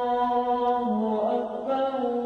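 Islamic prayer chant: a man's voice holds one long, steady chanted note that steps down slightly in pitch about a second in.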